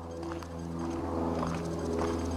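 A steady low hum with even overtones, holding one pitch throughout, with a few faint footsteps on the wooden planks of a footbridge.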